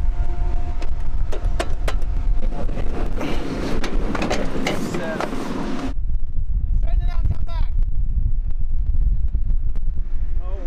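Strong wind buffeting the microphone as a low rumble, with knocks from handling the camera. A faint steady hum runs under it until the sound changes abruptly about six seconds in.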